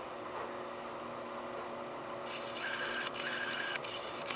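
Small motor whirring for about a second and a half in the second half, with a few tiny clicks, over a steady low hum: a camera lens motor driving the focus as a blurred close-up comes sharp.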